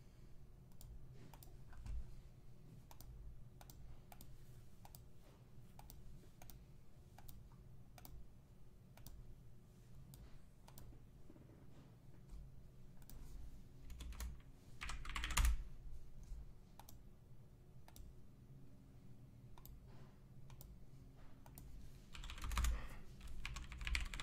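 Computer keyboard typing: keys clicking in quick, irregular runs, fairly quiet. A brief louder rush of noise comes about fifteen seconds in, and another shortly before the end.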